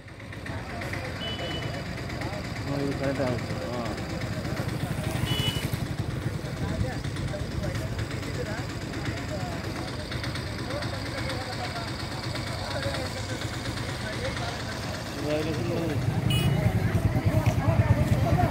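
Outdoor ambience: indistinct voices in the background over a steady low rumble, with a few brief high-pitched tones. It grows louder about fifteen seconds in.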